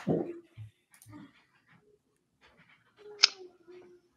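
Faint whining, like a dog's: a short falling whine at the start and a longer steady whine near the end, with a click between.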